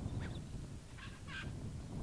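A bird calling three short times, once near the start and twice in quick succession about a second in, over a steady low rumble of wind.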